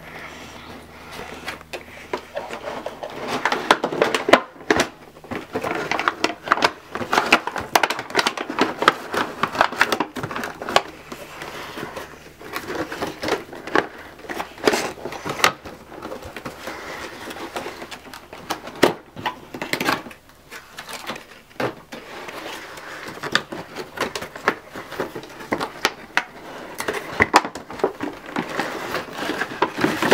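A cardboard box being handled and opened: irregular scraping, rubbing and sharp clicks of cardboard flaps and packaging, continuing throughout.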